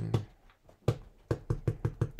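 A small rubber stamp tapped repeatedly onto cardstock on a desk to build up texture, giving a quick run of sharp taps, several a second, that starts about a second in.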